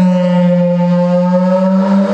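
Didgeridoo playing a steady low drone, with an overtone above it slowly sliding down and then back up.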